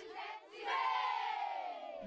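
A group of children cheering together in one long shout that starts about half a second in and slowly falls in pitch as it fades.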